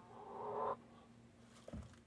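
A chicken's brief noisy call, rising for under a second and stopping abruptly, then a single knock near the end.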